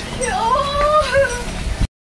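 A high-pitched, drawn-out vocal cry that dips, rises and is held, like a playful squeal or a meow-like call, then cuts off suddenly near the end.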